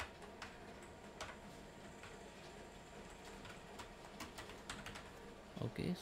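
Computer keyboard being typed on: faint, irregular key clicks.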